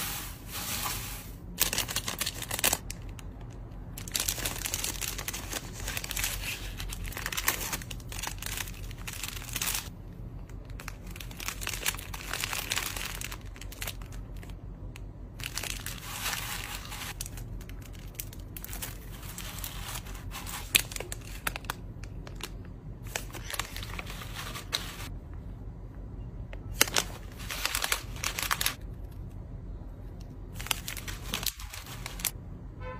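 Hands rustling and pressing crinkle-cut paper shred filler inside a cardboard mailer box, with plastic packaging crinkling as items are set in; the rustling comes in bursts with short pauses between.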